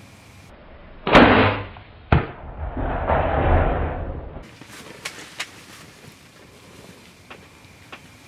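Shot from a PSE Carbon Air compound bow at a group of aoudad: a loud thump about a second in and a sharp crack a second later, followed by about two seconds of the startled herd scrambling away.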